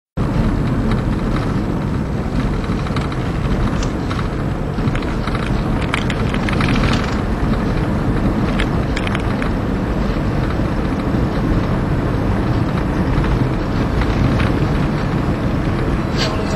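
Car driving, heard from inside the cabin: a steady rumble of engine and tyre noise, with a few brief light ticks around the middle.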